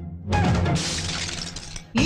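Film-song soundtrack at a break: the music thins out, then a sudden crash with a bright, hissy tail like shattering glass dies away over about a second, before the band and singing come back in.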